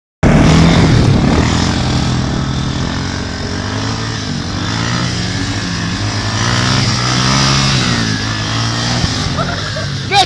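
Huansong 350 quad bike's engine running under held throttle while the quad carries two riders in a wheelie. The engine note wavers up and down a little and is loudest in the first second or two.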